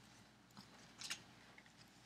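Near silence, with a faint, brief rustle of a large piece of 32-count Belfast linen being handled and refolded, the clearest about halfway through.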